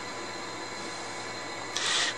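Steady background hiss with a few faint steady tones running under it, and a short breath near the end.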